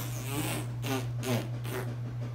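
A small child blowing on a video game disc to clean it: several short puffs of breath, over a steady low hum.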